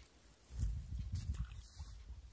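Wind buffeting the phone's microphone, a gusty low rumble that starts about half a second in.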